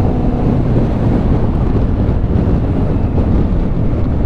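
Strong wind buffeting the microphone of a motorcycle riding at road speed, a steady dense rumble with the bike's engine and road noise faint beneath it.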